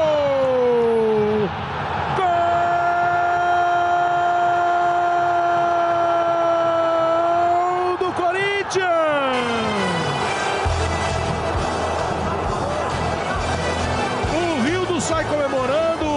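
A Brazilian TV football commentator's drawn-out goal cry: the voice glides down, holds one long high note for about five seconds, then falls away. Excited commentary follows over steady stadium crowd noise.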